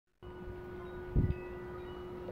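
Faint sustained ringing tones over a low background hiss, with a brief low bump just over a second in.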